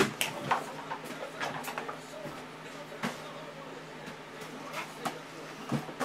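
Faint scattered clicks and light rustles of objects being handled, with sharper single clicks about three and five seconds in.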